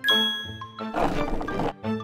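A bright, sparkling cartoon chime sound effect rings out at the start as the new wheel's hubcap gleams, fading over about half a second, over cheerful background music.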